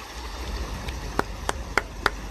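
Flood water rushing and splashing around a Range Rover Sport wading slowly through a flooded road, over a low rumble, with several sharp ticks in the second half.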